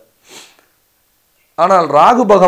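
A man's quick breath in between spoken phrases, short and soft, followed by a pause before his speech resumes about one and a half seconds in.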